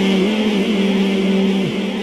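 A male naat reciter holding one long sung note through a microphone and PA with echo, ending it near the end.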